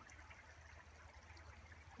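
Faint trickle of a small stream running underneath rocks, a soft steady wash of water.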